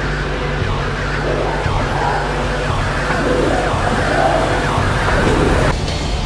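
Dramatic film-trailer soundtrack: a steady low drone under wailing tones that rise and fall, cutting off suddenly near the end.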